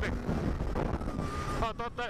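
Polaris SKS 700 snowmobile's two-stroke engine running at a steady pace on the move, a low steady rumble with wind buffeting the microphone; a faint steady whine comes in briefly past the middle.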